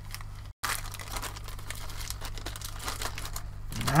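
A small clear plastic parts bag crinkling and crackling in the hands as it is worked open, a run of irregular small crackles.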